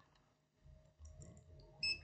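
Mostly faint room tone with a few faint clicks, then a short, high-pitched electronic beep near the end.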